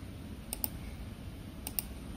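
Computer mouse button clicked twice, each a quick press-and-release pair, about half a second in and again near the end.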